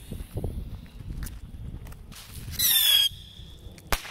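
Whistling Moon Traveler bottle rocket with report going off: a short, loud whistle about two and a half seconds in as it flies, then one sharp bang from the report near the end.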